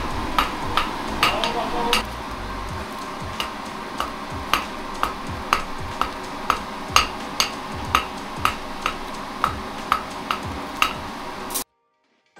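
Blacksmith's hammer striking red-hot iron on an anvil, about two ringing blows a second, as kebab skewers are forged by hand. The hammering cuts off abruptly just before the end.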